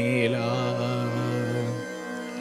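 A young man sings a Malayalam poem to a Carnatic-style melody, holding one long, wavering note over a steady low drone. The note fades away near the end.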